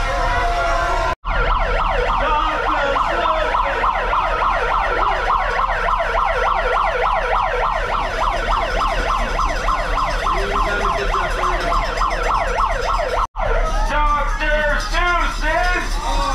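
A siren-like warble, a fast run of repeating pitch sweeps several times a second, from the costumed parade. It drops out sharply twice, about a second in and near the end, and gives way to a wavering sound in the last few seconds.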